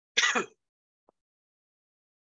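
A person clearing their throat once, briefly, just after the start.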